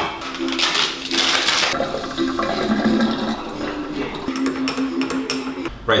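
Coffee being made at a kitchen counter: a rush of water or steam into a mug in the first couple of seconds, then a run of light clinks from a spoon and crockery near the end, over a low hum.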